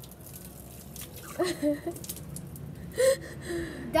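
Water poured from a plastic bottle splashing onto a child's face, with a few short voiced cries from the children about a second and a half in and again near the end.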